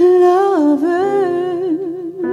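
A woman jazz singer sings a wordless line into a handheld microphone. She comes in strongly, slides the pitch down, then holds the note with a wide vibrato.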